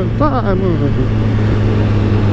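Kawasaki ZX-10R inline-four engine holding a steady cruising note, under a constant rush of wind across the helmet-mounted microphone.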